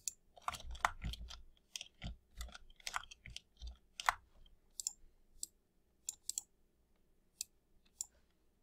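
Computer keyboard typing and mouse clicks. A quick run of key clicks with soft thuds starts about half a second in and lasts about three and a half seconds, followed by scattered single clicks.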